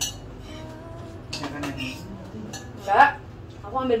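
Spoons clinking against soup bowls while people eat: a few short clinks, the loudest about three seconds in.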